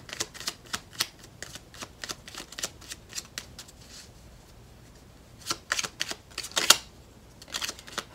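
Tarot deck being shuffled by hand, a rapid run of card flicks and snaps. The run thins out briefly around the middle, then resumes with one sharper snap near the end.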